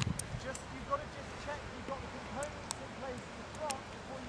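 A faint, indistinct voice in the distance, with a few sharp clicks now and then.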